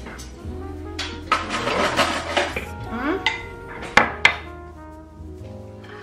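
Crockery and serving utensils clinking and knocking as food is dished up, with a few sharp clinks about four seconds in, over background music and faint voices.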